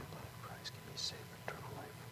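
A priest whispering a quiet prayer, faint, with a few soft hissing consonants and a small click about one and a half seconds in.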